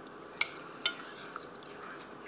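Light clicks while eating: two sharp ones about half a second apart, then a fainter third, over quiet room tone.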